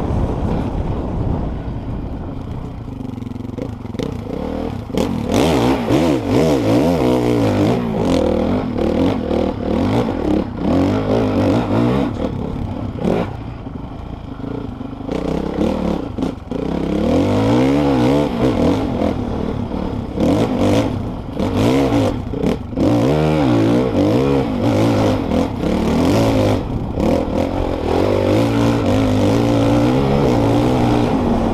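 Dirt bike engine heard from the rider's helmet camera, revving hard and easing off again and again as the bike is ridden over rough, muddy ground. Short knocks and clatter sound throughout as the bike hits bumps and ruts.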